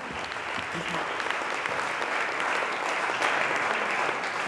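Concert audience applauding: a steady, dense wash of many hands clapping.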